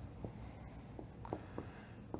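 A dry-erase marker writing on a whiteboard: a few short, faint squeaks and taps of the pen strokes.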